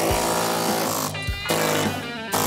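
Pneumatic air chisel with a small custom-made scraper bit hammering rapidly, chipping hardened, sticky carbon buildup off the inside of a steel kiln. It briefly eases off a little past a second in.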